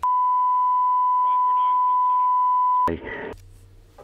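A steady electronic beep tone at one fixed pitch, about three seconds long, that cuts off suddenly: a broadcast line-up test tone marking an edit point in the recording. A brief burst of voice follows it.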